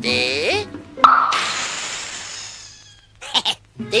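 Air rushing out of an inflatable toy car as its valve plug is pulled: a sudden hiss that fades away over about two seconds, after a short sliding vocal sound.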